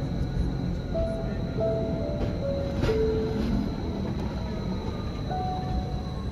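A Rigi mountain rack-railway train climbing: a steady low running rumble with a thin high whine. Over it, background music plays a few soft held notes.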